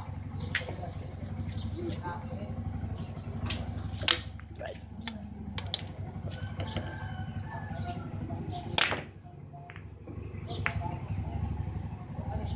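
A steady low engine hum runs under the window, with several sharp clicks and knocks, the loudest about four seconds in and near nine seconds in.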